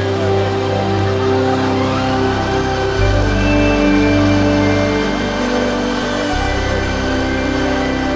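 Background music: sustained chords over a bass line that changes note every few seconds.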